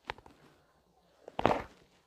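A few faint clicks, then a short knock with a brief "uh" about one and a half seconds in: handling noise from a phone camera being moved over a notebook page.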